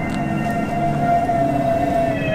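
Volkswagen ID.4's pedestrian warning sound at creeping speed: a steady synthetic hum, a held mid-pitched tone with fainter higher tones over a pulsing low drone, kind of like a two-stroke.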